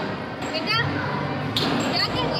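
Busy amusement-arcade ambience: a steady din of background voices and game-machine sounds, with a few dull thumps, one about half a second in and another near the end, and short electronic chirps.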